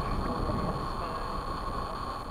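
Wind buffeting the microphone as a steady low rumble, with a thin steady whine above it.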